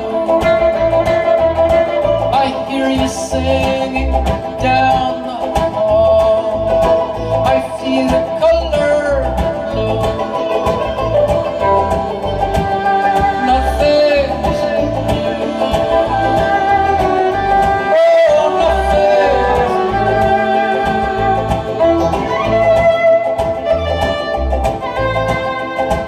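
Live string-band music with no vocals: a fiddle carries the melody over banjo and guitar, with a steady low drum beat underneath. The low end drops out briefly about three-quarters of the way through.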